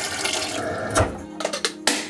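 Kitchen tap running water into the plastic clean-water tank of a Roborock S7 Pro Ultra robot vacuum dock, stopping a little over a second in, followed by a sharp click near the end. Music plays underneath.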